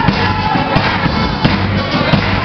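Live band playing: drum kit, electric bass guitar and guitar, with sharp drum hits standing out at a steady beat.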